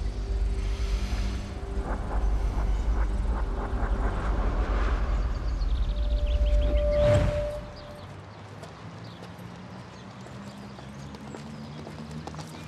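Dramatic film score with a deep low rumble and a held tone, swelling into a rush of noise about seven seconds in, then dropping to soft, quiet music.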